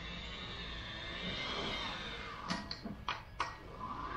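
A steal hand truck being tilted back and handled: a quick run of four or five sharp metal clanks past the middle, over a steady background.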